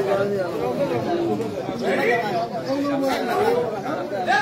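Several people talking at once: spectators' chatter, with overlapping voices throughout.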